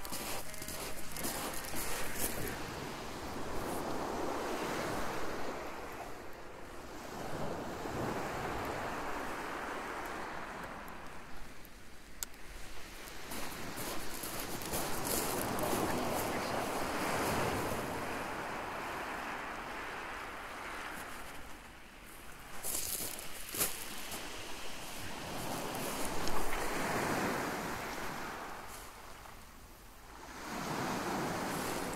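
Small waves breaking and washing up and back over a shingle beach, surging every few seconds, with some wind on the microphone and a few sharp clicks late on.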